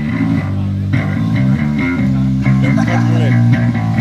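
Electric bass and guitar playing a song's opening riff without drums, amplified through PA speakers; the intro is started a bit quick.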